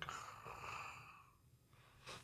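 A man's faint, breathy vocal imitation of a snow slab avalanche releasing, a soft exhaled rush that fades out after about a second.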